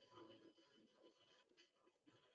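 Near silence: faint room tone, with a very faint brief sound just after the start.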